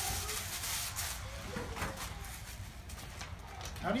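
Gift wrapping paper and tissue rustling and crinkling as a present is unwrapped by hand, dying down about three seconds in.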